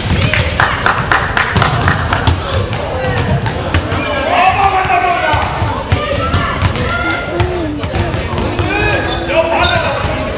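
A basketball bouncing repeatedly on an indoor court floor, the strikes coming thickest in the first three seconds.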